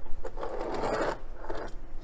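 Small die-cast Maisto toy police car rolled by hand across a cardboard box, its wheels making an uneven rattle; the wheels already shake and the car is poorly put together.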